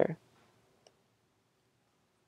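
The tail of a spoken word, then a quiet pause with a single faint click about a second in.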